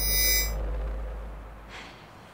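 Soundtrack music fading out: a brief bright high shimmer in the first half-second over a low bass note that dies away over about a second and a half.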